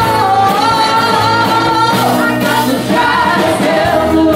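Live bluesy funk band playing: a woman sings a long held note, then a shorter phrase near the end, over guitar, electric bass and keyboard.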